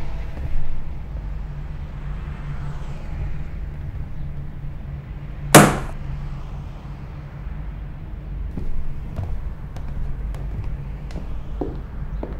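A single loud, sharp bang about five and a half seconds in, over a steady low rumble, with a few faint clicks near the end.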